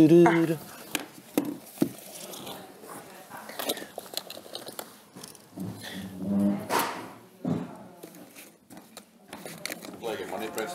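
Scattered light clicks and knocks of small objects being handled on a wooden dresser top, with a brief muffled voice about six seconds in.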